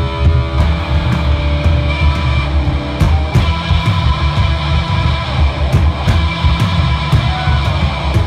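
Live punk rock band playing loudly without singing: distorted electric guitars, bass guitar and a drum kit keeping a steady beat.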